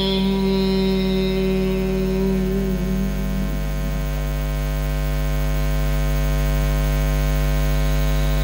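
Steady electrical mains hum carried through the microphone and sound system, a buzz of many even overtones that does not change. A faint voice trails off in the first few seconds.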